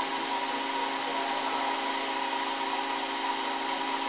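A steady machine hum from a running motor: several fixed tones over an even hiss, unchanging throughout.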